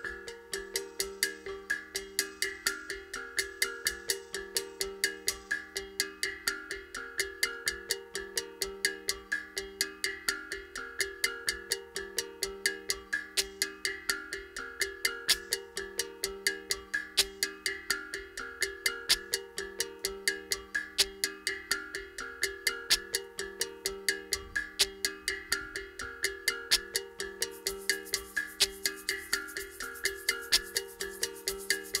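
Live-looped percussion groove: quick, even strikes with a bright ringing tone over a repeating low note. A shaker comes in near the end.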